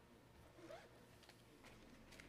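Near silence: room tone with faint rustling and a few soft clicks.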